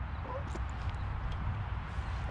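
Low, fluttering rumble of wind on the microphone. A few faint clicks and a brief chirp come about a third of a second in.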